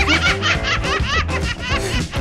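Quick, high-pitched laughter repeating several times a second, over background music.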